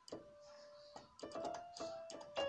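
Electronic keyboard played one note at a time: about four single notes of a slow melody, each held and fading before the next, two of them struck close together just past the middle.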